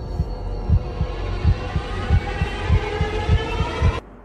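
Heartbeat sound effect: a steady run of low thumps in lub-dub pairs over a sustained droning tone, laid in as dramatic underscore.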